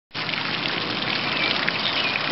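A small fountain's single vertical jet splashing steadily back down into its round pool of water.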